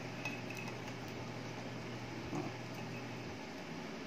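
Faint light clicks and scrapes of a stick battery and its wires being handled and slid into the metal stock tube of an airsoft M4 rifle, over a steady low hum.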